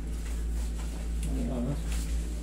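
A short, wavering, whine-like vocal sound a little past halfway through, over a steady low hum.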